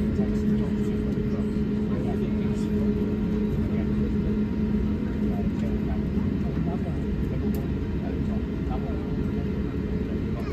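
Steady hum inside an Airbus A350-1000 cabin on the ground, with a constant low drone under it. Indistinct passenger chatter sits beneath the hum.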